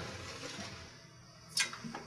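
Quiet room tone with one short knock about a second and a half in, as metal vent-pipe parts are handled.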